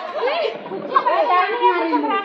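Several women's voices chattering at once, overlapping talk and exclamations.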